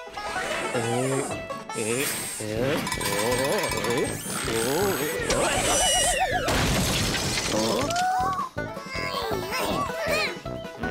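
Cartoon soundtrack: a small character's wordless squeals and exclamations, gliding up and down in pitch, over light background music. Around the middle there is a wavering, shaky call, followed by a noisy crash-like effect.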